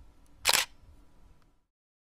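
A single SLR-style camera shutter click sound effect, sharp and short, about half a second in.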